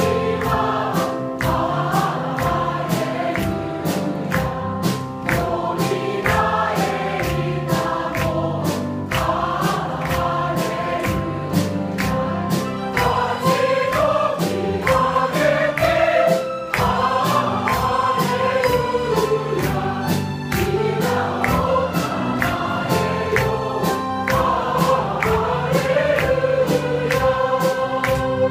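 Church choir singing a praise song together over an accompaniment with a steady beat.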